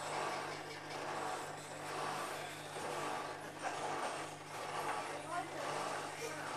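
Whirlpool AWM5145 front-loading washing machine with its drum turning and the wet load swishing round. A steady motor hum runs under a swishing that swells about once a second as the drum gets going into the spin after the wash.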